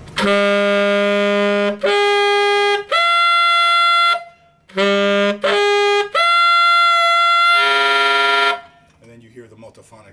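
Tenor saxophone held on the split F altissimo fingering (with low C, low B-flat and side F-sharp keys) and overblown up its overtone series: a low note, then one an octave higher, then a higher partial, each held about a second. The climb is played twice, the second time ending in a multiphonic, several notes sounding at once, as the altissimo G comes out.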